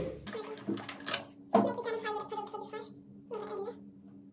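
A woman laughing, then two drawn-out high-pitched vocal sounds, the first long and the second short near the end.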